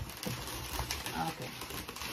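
Latex twisting balloons rubbing against each other and against the hands as they are handled, giving a few small irregular ticks and rubs.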